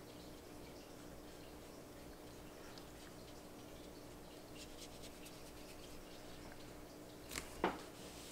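Faint brushing of a watercolour brush on paper over a low steady hum, with two sharp taps close together near the end.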